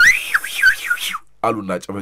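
A high-pitched, whistle-like sound sweeps up and down in pitch several times over a hiss, for about a second. A man's speech follows.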